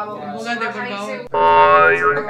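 Voices talking in a room, then a loud, drawn-out vocal cry held for most of a second that rises in pitch at the end.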